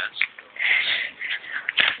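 A short breathy sound from a person close to the microphone, with a sharp click near the end.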